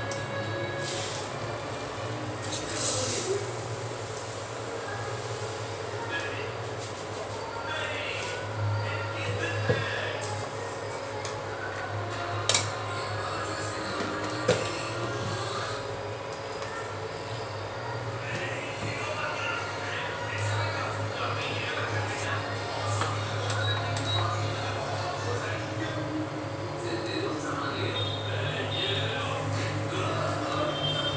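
Electric induction cooktop humming steadily with a faint whine, its low hum swelling and easing in stretches, while a steel spatula and utensils clink sharply against a wok a few times in the middle.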